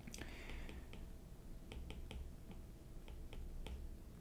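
Faint, irregular pen taps and clicks, about a dozen, with a short scratch near the start, as a note and an arrow are handwritten.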